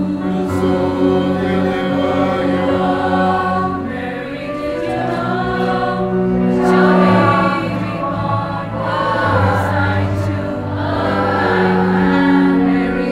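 Mixed choir of women's and men's voices singing in harmony, holding long sustained chords that change every few seconds.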